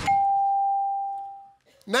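A game-show electronic chime: one clear tone that rings and fades out over about a second and a half, as the 25-second Fast Money clock comes up on the board.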